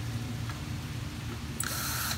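Cordless drill/driver running briefly near the end, backing a screw out of a Razor E200 scooter's deck plate, over a steady low background rumble.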